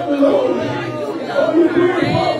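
Several people praying aloud at once, their voices overlapping. One man's voice comes through a handheld microphone, all echoing in a large hall.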